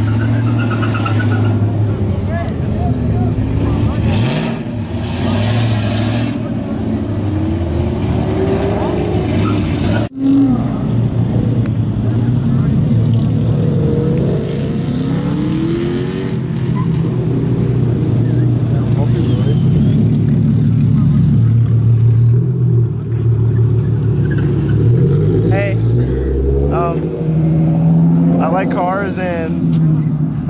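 Performance car engines at a car meet: a deep exhaust note running steadily, blipped several times so the pitch sweeps up and falls back. The sound breaks off sharply about a third of the way in, then the engine note carries on.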